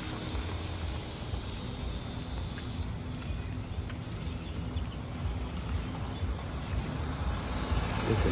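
Steady low outdoor rumble of distant traffic and wind on the microphone, with a high steady hiss that stops about three seconds in.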